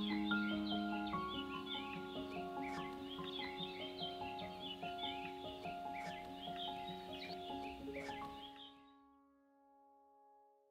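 Background music of slow, held notes with bird chirps mixed in, fading out to silence about nine seconds in.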